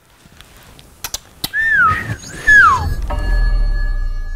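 Short outro jingle for the production company's end card: after a couple of clicks, two whistle-like tones arch and fall in pitch, then a sustained synth chord with deep bass sets in and begins to fade.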